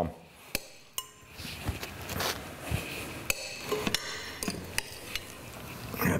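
A metal spoon clinking against a glass mixing bowl as thick cheese mixture is scooped out, with soft scraping as it is spread onto toasted muffin halves; a scatter of light, separate clinks.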